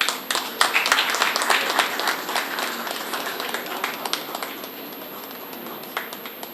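Applause from an audience, a dense patter of hand claps that is loudest in the first two seconds and then thins out to scattered claps near the end.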